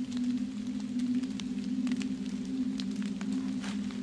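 A steady low hum, with faint scattered ticks over it.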